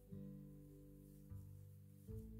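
Faint background music: soft, sustained acoustic guitar notes, the chord changing about a second and a half in.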